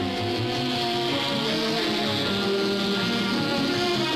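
Instrumental background music, a melody of held notes that change pitch every half-second or so.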